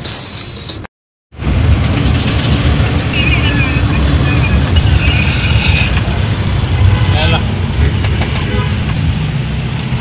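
Music cuts off abruptly about a second in. After a brief silence comes the steady engine and road rumble of a moving minibus, heard from inside the cabin.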